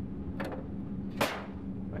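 Sample-compartment lid of a Shimadzu UV-1800 spectrophotometer shut by hand, closing with one sharp clack a little over a second in, after a faint tick.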